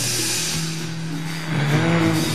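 Rock band playing live in the studio: a wash of cymbal-like noise at the start over a held low note, with pitched parts bending in about a second and a half in.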